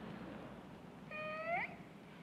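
A woman's short, high-pitched wordless vocal sound about a second in, held on one note and then sliding upward. It is given as an answer in place of words.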